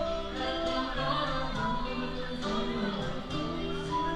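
A live acoustic band playing a song, with singing over guitar accompaniment.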